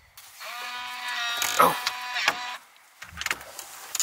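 A cabin's door lock being worked: a small motor whirs steadily for about two seconds, then a few sharp clicks follow as the lever handle is turned.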